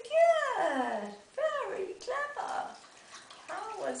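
A voice making about three drawn-out, pitched sounds. Each rises briefly and then slides down in pitch, the first and longest lasting about a second.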